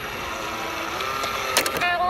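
Small battery motor of a Gudetama coin-stealing bank whirring steadily as the figure pulls back inside and the lid shuts, ending in a few sharp plastic clicks about a second and a half in as the lid snaps closed.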